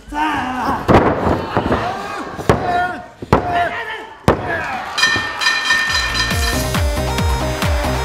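A referee's hand slaps the ring mat about a second apart for a pinfall count, amid crowd shouting. Then the ring bell is struck rapidly, ending the match, and entrance music with a steady electronic beat starts.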